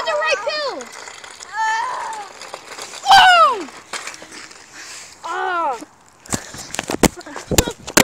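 Boys' wordless shouts and cries, several high yells that fall in pitch. Near the end, a quick run of sharp knocks and rubbing as the phone camera is grabbed and handled.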